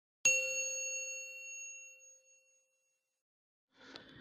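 A single bright bell ding sound effect for the subscribe animation's notification bell. It strikes once and rings out, fading away over about two seconds.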